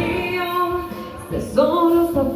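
A woman singing live into a handheld microphone, amplified through a PA: a held sung note that fades about a second in, then a new sung phrase starting with an upward slide about one and a half seconds in.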